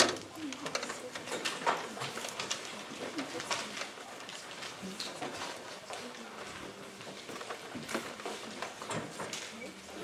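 Hushed murmur of voices and shuffling in a reverberant hall, with scattered knocks and clicks as a trunk on a folding table is lifted and carried across a wooden floor. The sharpest knock comes right at the start.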